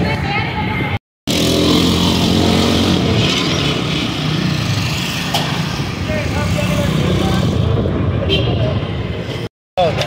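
Street-side background noise: people talking over a steady, low engine-like hum. The sound drops out briefly about a second in and again near the end.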